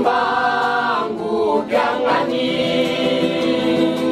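A group of young voices singing together as a small choir, holding long sustained notes, with a brief break for breath about one and a half seconds in.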